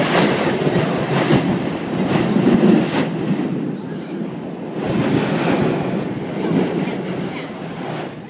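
Mount Yasur's vent erupting: a loud, continuous rumbling rush of escaping gas and ash. It swells several times and fades toward the end. The loudness comes from gas building up under the vent and blasting out.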